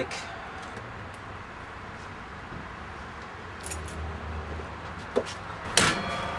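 Engine dipstick being pulled from its tube and handled, with faint light metallic scrapes and rattles over a steady hiss. A sharp knock comes just before the end.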